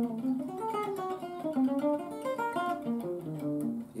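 Archtop electric guitar playing a quick run of single-note traditional jazz lines with the volume turned down and a light touch, so the notes come out quiet and thin, not projecting much at all.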